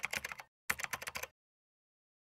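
Computer-keyboard typing sound effect: two quick runs of key clicks, the second stopping a little over a second in.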